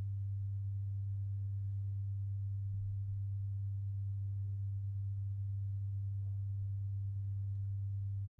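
Steady low electrical hum: a single unchanging low tone with nothing else over it, typical of mains hum picked up by the recording setup.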